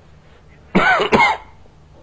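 A man coughing about a second in, two quick coughs close together.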